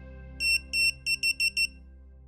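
Six high electronic beeps over quiet background music: two longer beeps, then four short, quick ones in a row.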